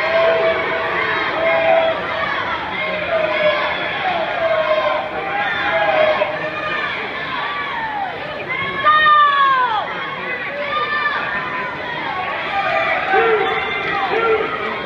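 Spectators at a swimming race shouting and cheering, many overlapping voices calling out at once, with one louder drawn-out shout about nine seconds in.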